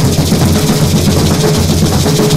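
Garifuna drum music, loud and continuous, with pairs of maracas shaken in a fast, steady rattle over the drumming.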